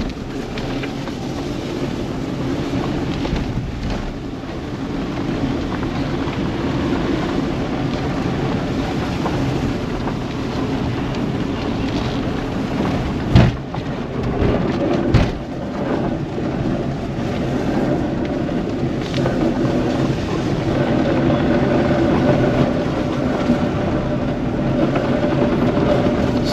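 Car driving slowly on a rough dirt track, heard inside the cabin: steady engine and road noise with two sharp knocks about halfway through. In the second half a rougher noise builds that is called a terrible sound, which the driver puts down to a branch caught under the car.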